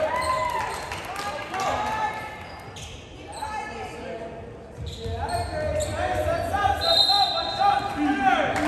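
Players and spectators calling out in a large gym, with a few thuds of a volleyball bouncing on the hardwood floor.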